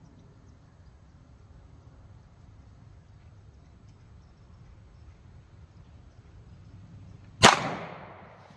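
A single shot from a Glock 17 pistol firing DoubleTap 115-grain 9mm +P solid copper hollow point, about seven and a half seconds in, with a short ringing tail. Before it there is only a faint low background rumble.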